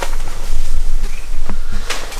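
Rustling handling noise close to the microphone, with a couple of sharp knocks about one and a half seconds in and just before the end.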